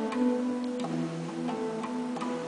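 Acoustic guitar played in a steady pattern of single plucked notes, about three or four a second, each note ringing on after its attack.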